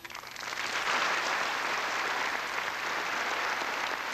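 Audience applause, swelling up within the first half second and then holding steady.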